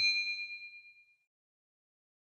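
A bright bell 'ding' sound effect for a notification bell, already struck and ringing on a few high tones that fade away over about a second.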